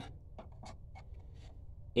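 A few faint, irregular light ticks and clicks over a low, steady hum.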